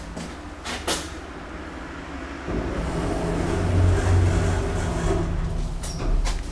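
Dralle passenger lift: a couple of light clicks, then about two and a half seconds in a steady low rumble and hum sets in and grows louder as the car starts to travel.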